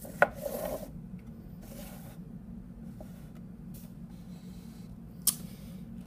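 Plastic model railway building being handled and moved on a tabletop: a sharp click just after the start, short spells of plastic rubbing and scraping, and another knock near the end, over a steady low hum.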